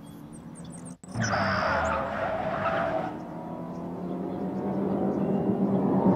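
About a second in, a sports car on the film soundtrack pulls away hard with a tyre squeal, then its engine keeps running at speed, growing louder.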